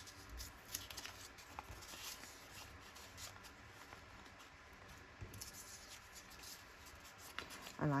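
Faint rustling of paper scraps being handled and layered together, with scattered light taps and clicks as the strips are picked up and laid against one another.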